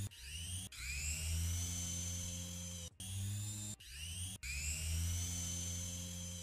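Laboratory centrifuge motor spinning up: a whine rising in pitch and settling into a steady tone over a low hum. It breaks off abruptly and starts over about five times.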